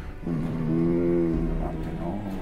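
A man's voice holding one low, steady note for about a second and a half, in a rap track.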